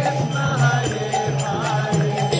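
Kirtan: voices chanting a mantra over a held harmonium tone, with mridanga drum strokes and the ringing of karatala hand cymbals.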